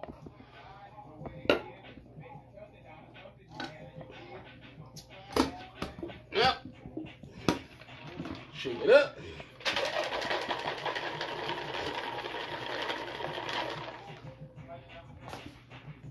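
Ice rattling inside a metal cocktail shaker, shaken hard for about four seconds in the second half, after a few scattered clinks and knocks of handling.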